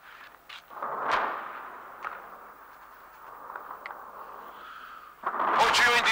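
Distant anti-aircraft gunfire: a handful of separate reports over a steady rushing noise, the loudest about a second in.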